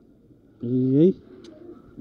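A man's short wordless vocal sound, a low hum-like "hmm" or "ooh" rising in pitch, about half a second in and lasting about half a second, over faint steady background noise.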